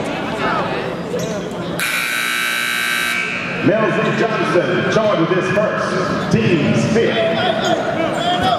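Arena scoreboard buzzer sounding once, a steady buzz of just over a second that starts about two seconds in and cuts off suddenly, echoing in the large hall over voices.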